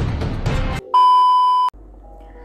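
Background music that cuts off a little under a second in, followed by a loud, steady electronic beep lasting under a second that stops abruptly.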